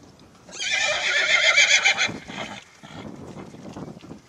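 A horse whinnies once, a loud wavering call of about a second and a half that fades out, followed by softer hoofbeats on soft ground.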